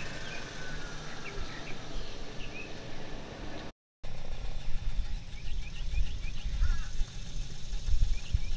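Outdoor ambience: small birds chirping in short, scattered high calls over a low rumble, broken by a brief moment of silence a little before halfway.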